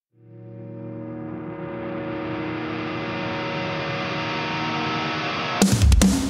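Opening of a heavy rock song: a single sustained, effects-laden chord fades in and slowly brightens, then the full band with drums and distorted guitars comes in loudly about five and a half seconds in.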